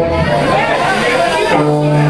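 Live rock band playing in a bar, with a held low note coming in about one and a half seconds in.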